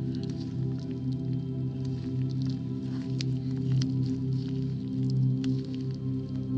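Background music with steady low held tones, over small wet squelching clicks from a soft mochi squishy toy being squeezed in rubber-gloved hands.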